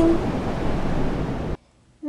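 Steady rushing wind noise standing for gale-force winds, which cuts off abruptly about one and a half seconds in.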